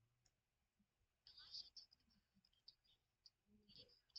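Faint, scattered clicks and crackles of a dried charcoal peel-off mask being picked and pulled off the skin at the hairline with the fingertips, with a small cluster of them about a third of the way in.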